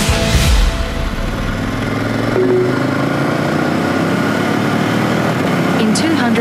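Background music ending about a second in, giving way to a KTM 1290 Super Adventure R's V-twin engine running steadily at road speed, its pitch climbing slowly in the second half.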